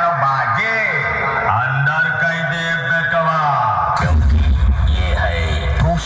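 Electronic DJ track opening with a processed male voice tag with echo. Deep bass comes in about four seconds in.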